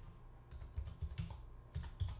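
Faint clicks of a computer keyboard being typed on, about half a dozen keystrokes in quick, uneven succession, as a number is entered into a calculator.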